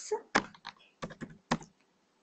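Typing on a computer keyboard: a handful of separate, irregularly spaced keystrokes as code is entered.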